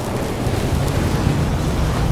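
Cinematic intro sound effect: a deep rumble under a rushing, wind-like noise, holding steady and growing a little louder near the end.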